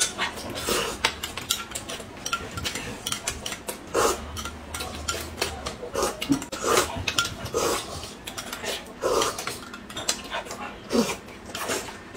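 Spoons clinking against glass cups of soup and chopsticks tapping on a plate, with repeated short slurping and chewing sounds of people eating.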